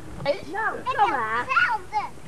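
Young children's high-pitched voices talking and calling, with no clear words.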